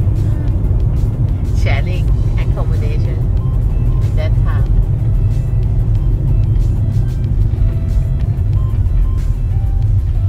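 Steady low rumble of road and engine noise heard inside a moving car at cruising speed, with faint music and voices over it.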